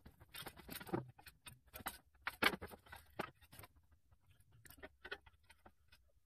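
Baling wire being worked against the steel bars of an IBC tote cage: faint, irregular clicks and rustles, busiest in the first half and thinning out after.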